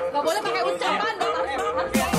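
Several people talking over one another in a group, lively chatter.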